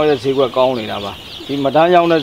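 A flock of young layer chicks peeping continuously in a brooder house, under a man's talking voice.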